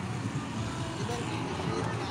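City street traffic noise, with a car driving past and a steady road rumble.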